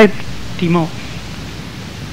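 A man's lecture voice pauses, leaving a steady background hiss from the recording; a brief spoken sound comes about half a second in.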